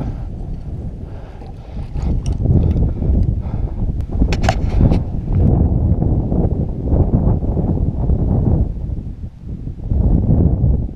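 Wind buffeting the microphone: a loud, uneven low rumble that swells and drops. A brief sharp noise cuts through it about four and a half seconds in.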